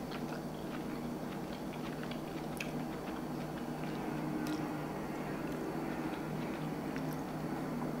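A man chewing a mouthful of steamed cauliflower: faint, scattered soft mouth clicks over a steady low hum.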